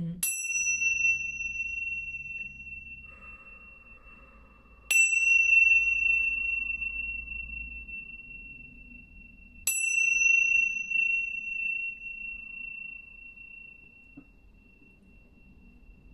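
Tingsha cymbals struck together three times, about five seconds apart, each strike leaving a long, slowly fading high ringing tone.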